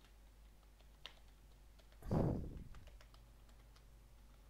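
Computer keyboard typing: light, scattered key clicks, one slightly sharper about a second in. About two seconds in there is one much louder, short, low-heavy noise that fades within a second.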